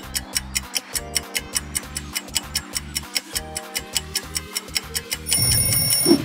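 Countdown-timer sound effect: clock ticking steadily, about four ticks a second, over a low looping background beat. About five seconds in, the ticking gives way to a high ringing tone as the timer runs out.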